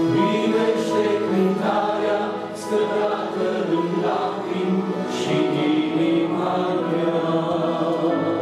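A man singing a Christian worship song through a microphone, accompanied by electric keyboard holding sustained chords.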